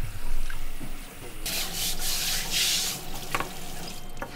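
A toothbrush scrubbing a raw fish under a running tap. Water runs throughout, and loud, scratchy brushing comes in surges from about a second and a half in.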